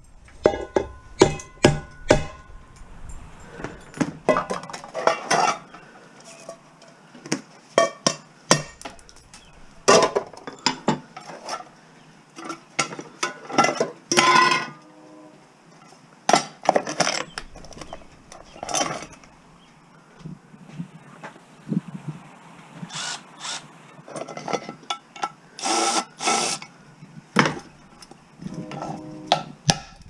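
Irregular metal knocks and clanks as old pots and pans are struck with a hammer and pried apart by hand; some strikes ring briefly.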